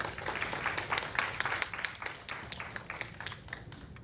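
Audience applauding: many hands clapping, building quickly at the start and thinning out to a few scattered claps near the end.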